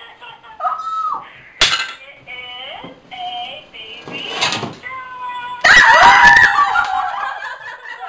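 Several women's excited voices and laughter around a phone on speakerphone, with a sharp short outburst about a second and a half in. About three quarters of the way through comes the loudest part: loud excited shrieking lasting a couple of seconds.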